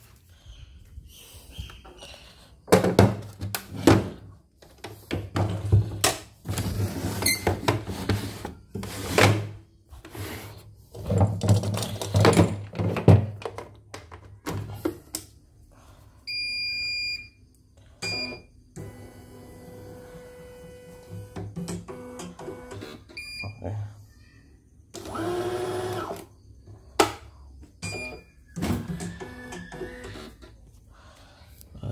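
For about the first half, cardboard and packing material are handled in loud, irregular bursts of rustling and knocking. Then a CNY computerized embroidery machine is powered up: high electronic beeps, a steady motor hum, and a short whirring sound that slides in pitch, with more beeps near the end.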